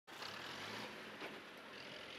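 Fire engine driving off along a dirt forest track. Its engine hums low and fades as the truck pulls away, over a steady rush of tyre noise.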